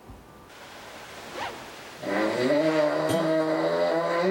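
A man snoring heavily in his sleep: after a short rising swish, one long, loud snore begins about two seconds in and holds a steady pitch. A doctor puts this snoring down to a deviated nasal septum that forces him to breathe through his mouth.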